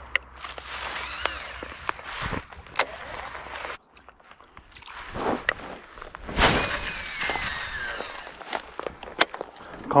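Rustling handling noise from a fishing rod and reel being worked at the water's edge, with many sharp clicks scattered through it.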